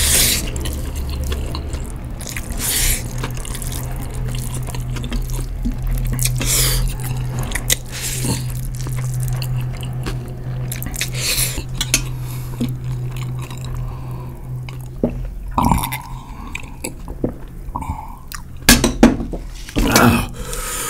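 Instant noodles being slurped and chewed, with short sharp slurps every couple of seconds. Underneath runs a steady low hum that fades out about three-quarters of the way through.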